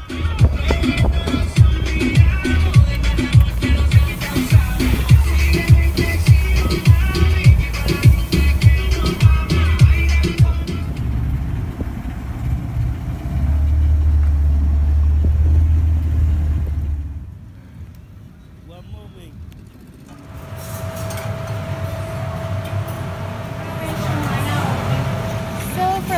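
Background music with a steady beat for about the first eleven seconds. It gives way to a low steady rumble of a small boat running on the water, which fades out. Near the end a faint steady hum comes in.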